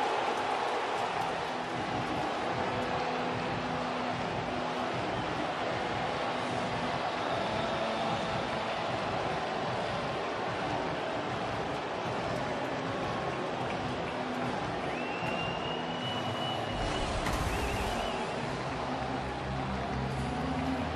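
Stadium crowd cheering steadily after a go-ahead-threat double, with a thin held whistle from the stands late on.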